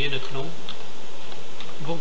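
A man's voice trailing off at the start, then a steady buzzing hum in the background.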